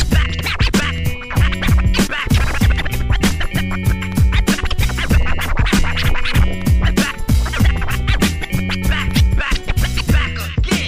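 Hip-hop beat with a steady drum pattern and bass, overlaid with DJ turntable scratching.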